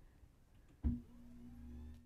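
Electric lift motor of a height-adjustable lectern: a knock about a second in as it starts, then a steady hum as the desk rises.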